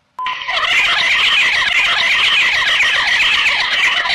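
A harsh electronic sound of dense, fast warbling chirps, starting abruptly with a short steady beep; it is played as the sound of a grey alien directly after 'transmutation'.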